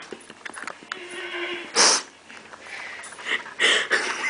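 A person making breathy, nonverbal noises through the nose or mouth: two short, sharp, hissy bursts about two seconds apart, the first the loudest.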